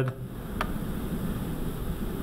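Room tone: a steady low hum, with one sharp click a little over half a second in.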